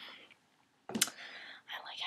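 A young woman whispering softly, a breathy, unvoiced murmur that starts sharply about a second in after a brief pause.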